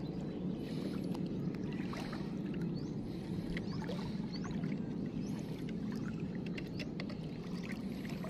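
Shallow seawater sloshing and splashing in short irregular bursts, about one a second, as someone wades through it, over a steady low rumble.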